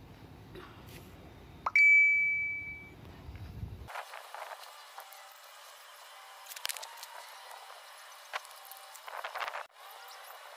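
A single sharp metal-on-metal clink about two seconds in, ringing out clearly and fading within about a second, from brass fittings and tools being handled. Faint handling clicks and rustles follow.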